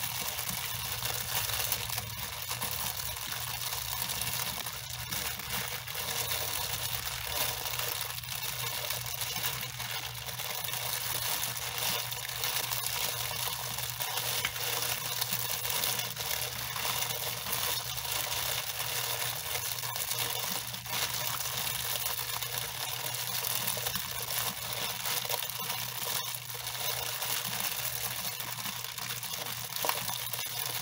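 Shower water spraying steadily onto long wet hair, a continuous even hiss.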